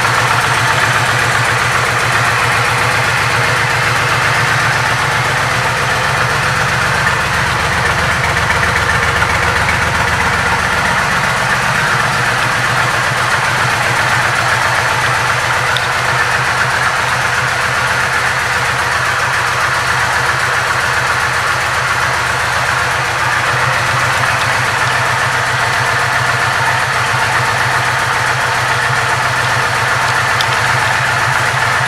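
Kawasaki Vulcan 1600 Nomad V-twin engine idling steadily after being started.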